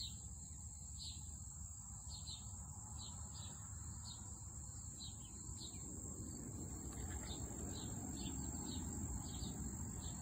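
A steady, high insect trill of the cricket kind, with short chirps repeating about once or twice a second over a low background rumble.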